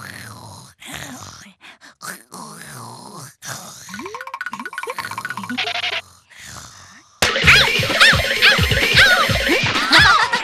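Cartoon soundtrack: background music with comic sound effects, including short sliding-pitch sounds. About seven seconds in it jumps much louder as a cartoon boy bursts out laughing over the music.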